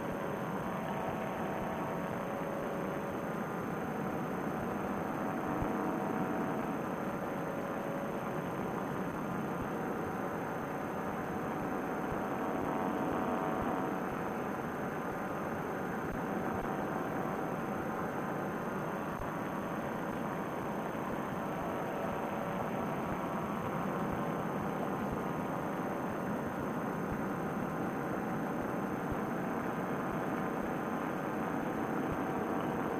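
Vittorazi Moster two-stroke paramotor engine and propeller running steadily in flight, mixed with rushing air. It is heard through a narrow-band headset microphone.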